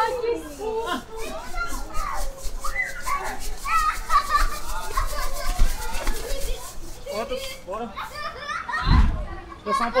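High-pitched voices chattering and squealing without clear words, with a fast faint ticking beneath them for a few seconds and a low thump about nine seconds in.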